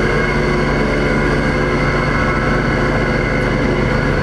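Steady hum of a ship's deck machinery: a low drone with several steady tones, unchanging in level.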